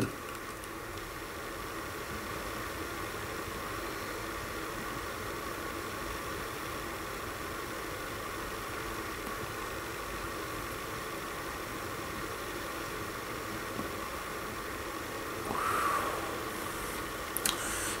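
Steady, even hiss of room noise during a pause in pipe smoking, with one brief soft breathy swell near the end.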